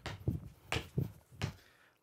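A person hopping repeatedly on one leg in sneakers on a wooden floor: about five short landing thuds, roughly two a second, that stop in the last half second.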